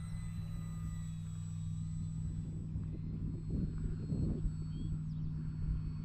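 Steady low hum with faint, thin high whining tones from a HobbyZone Carbon Cub S2's brushless electric motor and propeller running at minimal throttle.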